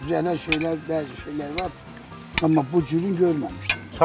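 Metal cutlery clinking against plates a few times, with people talking at the table.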